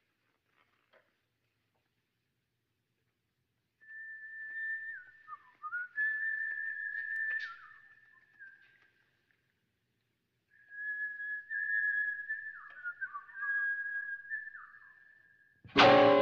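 Person whistling in two long phrases: a held high note broken by short downward slides, the first beginning about four seconds in and the second about ten seconds in. Loud music starts abruptly just before the end.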